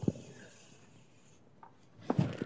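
Chalk on a blackboard: a sharp tap as the chalk meets the board, then a faint scratchy stroke lasting about a second and a half as a long line is drawn.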